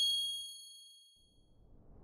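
Logo-animation sound effect: a bright, bell-like ding of several high tones ringing and fading out over about a second and a half. It is followed by a whoosh that starts rising near the end.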